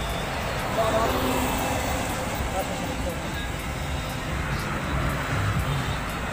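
Road traffic noise from a busy road, a steady rumble, with indistinct voices and music underneath.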